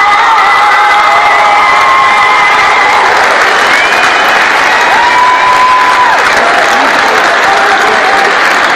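Gym crowd applauding and cheering, with scattered shouts rising over steady, loud clapping.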